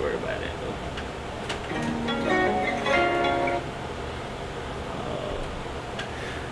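A short snippet of a song played through a laptop's built-in speakers: a few held musical notes start about two seconds in and stop just past the middle, over a low steady room hum.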